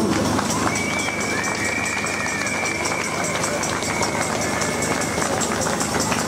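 Crowd applauding, a dense steady patter of claps, with a thin high whistle tone held over it from about a second in until near the end.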